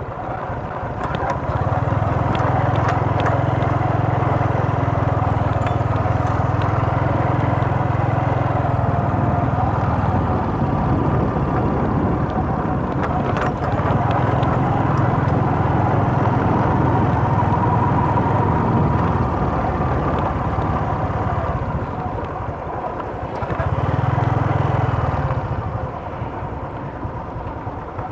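A motor vehicle running steadily as it travels along a rough dirt road, a continuous low engine and road rumble that eases off briefly a couple of times near the end.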